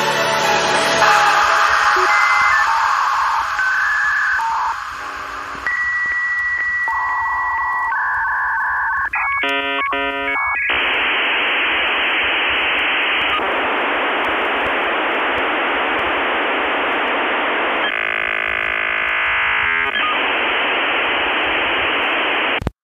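Dance music thins out into the sound of a dial-up modem connecting over a phone line. Separate beeping tones and a held high tone come first, then a quick warbling exchange of tones about ten seconds in. After that comes a long, harsh hiss of data noise that changes texture briefly near the end.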